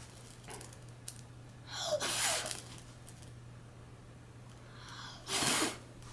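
A young child blowing at birthday candles: two short puffs of breath, one about two seconds in and one near the end. The puffs are too weak to put the candles out.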